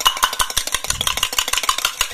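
A metal spoon stirred fast inside a steel tumbler, a quick continuous run of clinks and scrapes against the metal sides.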